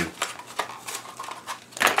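Cardboard and plastic retail packaging being pulled apart and handled, with light rustles and small clicks, then a short, louder crackle or clatter near the end.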